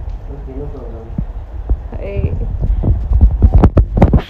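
A run of short, irregular knocks and thumps over a steady low rumble, loudest in the second half, with faint voices in the first half; the rumble and knocks fit a handheld phone camera being moved about.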